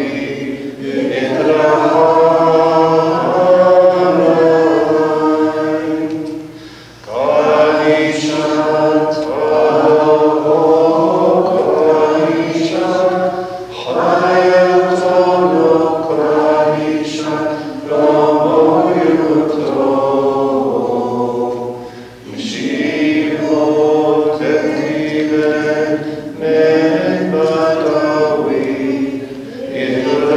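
Maronite liturgical chant sung in long, sustained phrases, with three short breaks between them.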